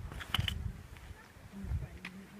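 Wind buffeting the microphone in low, uneven gusts, with two sharp clicks about a third of a second in.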